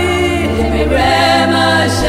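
Gospel song: voices sing long held notes with vibrato over a steady bass accompaniment. The melody moves to new notes about half a second and again about a second in.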